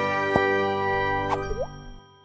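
Animated channel-logo outro jingle: a sustained bright musical chord with cartoon plop sound effects, including a quick rising pop about a second and a half in, fading out at the end.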